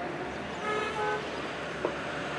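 A vehicle horn gives a brief toot just over half a second in, about half a second long, over steady outdoor traffic noise. A short click follows near the end.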